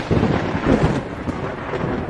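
Thunder sound effect: a dense, rolling rumble that eases slightly after about a second.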